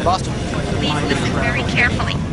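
Steady rushing noise of a jet airliner's engines as it climbs, with indistinct voices over it.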